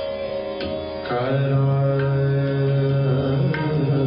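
Sikh kirtan: a tabla played under bowed, fretted long-necked string instruments of the dilruba kind. About a second in, a strong held low melody note comes in and the music grows louder, with a few single tabla strokes over it.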